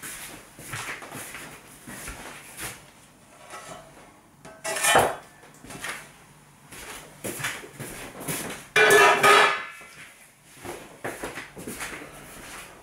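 Metal bread tin and wire cooling rack knocking and clattering as a freshly baked loaf is turned out of the tin and set on the rack, with two louder clanks about five and nine seconds in.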